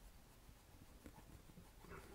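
Near silence: room tone, with only faint soft strokes of a brush dragging acrylic paint across canvas.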